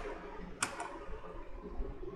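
A computer keyboard keystroke clicks about half a second in, with a fainter one near the end, over faint steady hiss and hum.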